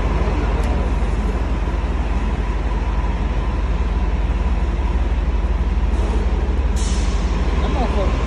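A vehicle engine idling with a steady low rumble, with a short sharp hiss about seven seconds in.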